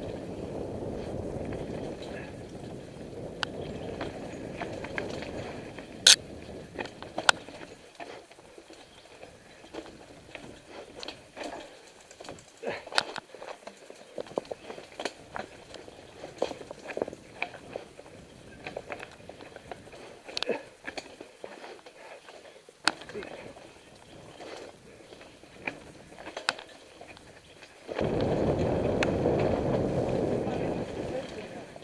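Mountain bike ridden along a wooded dirt singletrack. A rushing noise of speed runs for the first few seconds and comes back loudly near the end. In between, the bike gives many sharp clicks and rattles as it goes over roots and rocks.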